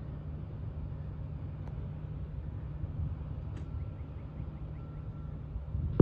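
Steady low hum of a running motor, with a few faint high chirps past the middle.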